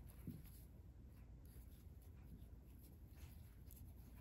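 Near silence with faint, scattered scratchy rustles of fine cotton thread drawn over a steel crochet hook and fingers.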